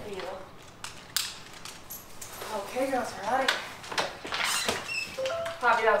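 Handling noise of a dog harness being buckled on: sharp clicks and rustling, with a few short, squeaky whines from an excited dog around the middle.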